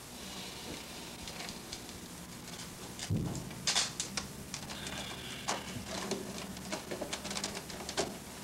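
A black ash basket rim being handled, bent and fitted to a basket top: scattered clicks and scrapes of the wood, with a thump about three seconds in followed by a few sharp scraping strokes. A faint steady low hum runs underneath.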